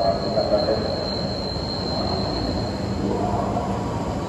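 An E653 series electric express train running slowly into the platform, with a high, thin, steady squeal from its wheels and brakes as it slows. The squeal stops about three seconds in, leaving the train's rumble.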